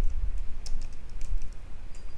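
Typing on a computer keyboard: a string of irregular, quick keystroke clicks over a low steady hum.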